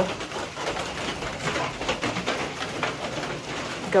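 Rain falling: a steady soft hiss with scattered irregular drop taps.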